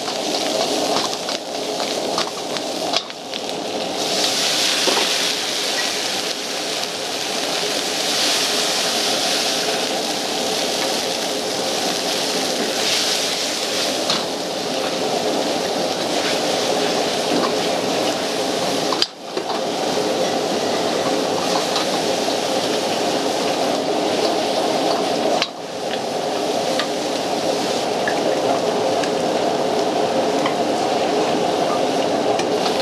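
Stir-frying in a steel wok over a high-powered gas burner: a steady loud sizzle and hiss of food and liquid in the hot wok, with the burner's flame running underneath. A metal ladle scrapes and clatters against the wok, and the sound breaks off briefly a couple of times.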